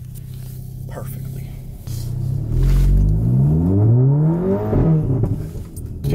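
Audi A3's turbocharged four-cylinder engine heard from inside the cabin: a steady low hum at first, then revs climbing as the car pulls away and accelerates about two seconds in. The revs drop briefly near the end.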